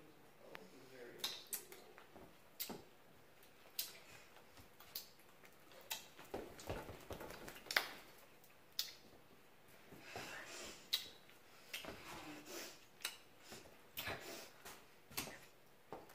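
Faint, scattered clicks and knocks of people moving about and handling small things, with a few faint murmurs or mouth sounds now and then.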